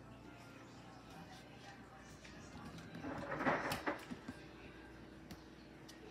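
A spatula scraping cake batter out of a stainless steel mixing bowl, with one louder burst of scraping and clatter against the bowl about three seconds in.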